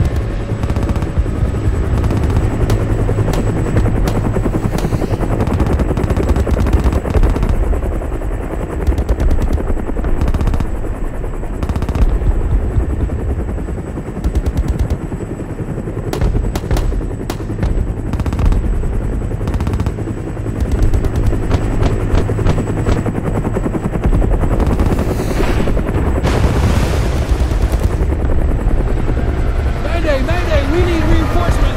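Semi-automatic pistol shots at an outdoor range, fired one after another at an irregular pace through the whole stretch, with more shots going off along the firing line. A steady low rumble lies under the shots.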